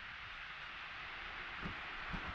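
Faint, steady rush of distant falling water from a waterfall and its burn across the valley.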